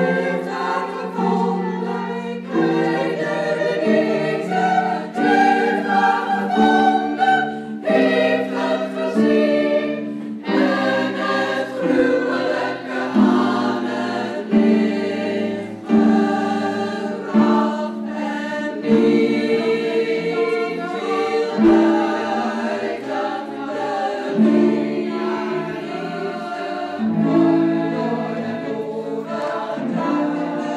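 Women's choir singing with an alto soloist, accompanied by cellos and harp, in held chords that change every second or two.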